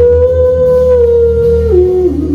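Heavy metal band playing live, with the lead vocalist holding one long high sung note over a sustained chord, the note dropping lower near the end.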